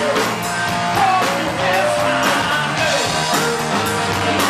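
Live rock band playing: drum kit with cymbals, electric guitar, and a man singing into a microphone through the PA.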